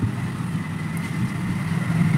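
A steady low mechanical hum, with a faint thin whine above it, from a machine running.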